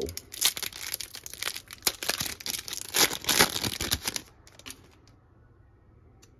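The wrapper of a 2021 Donruss Optic football card pack being torn open and crinkled by hand, a run of sharp crackles for about four seconds.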